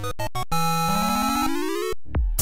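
Video-game-style 'level completed' jingle: a quick run of short synth notes, then a long held synth chord with a note gliding steadily upward, cutting off suddenly near the end.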